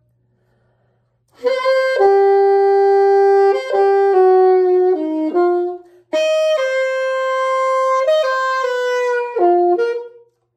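Yamaha YAS-62 alto saxophone playing a slow melodic phrase in two parts, long held notes joined by pitch slides, starting about a second and a half in with a short break in the middle. It is played with the better tongue position and relaxed but engaged embouchure gained from overtone practice, giving more control over the tone.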